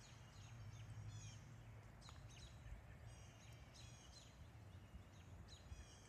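Faint birds chirping, a run of short falling chirps repeating every fraction of a second, over a low steady rumble of outdoor background noise.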